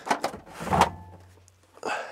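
Knocks and a scraping clatter of equipment being handled in the back of a van: a sharp knock at the start, a longer scrape peaking just under a second in, and another knock near the end.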